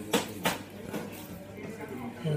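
Two sharp clatters about a third of a second apart, over faint background voices in a busy bar.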